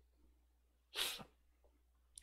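A man's single short, breathy puff through nose or mouth, like a sniff or sharp exhale, about a second in; otherwise near silence.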